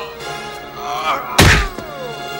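A single heavy hit, the dubbed punch sound effect of a film fight, about one and a half seconds in, over the film's action music score.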